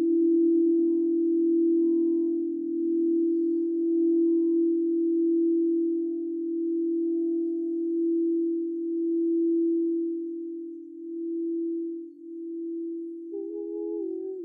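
Frosted crystal singing bowl sung by a wand circling its rim, holding one steady tone that swells and ebbs slowly and eases off after about eleven seconds. A second, higher pitched tone enters near the end.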